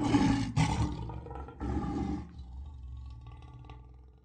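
A lion's roar used as a sound effect. It is loudest at the start, swells again about one and a half seconds in, and then fades away near the end.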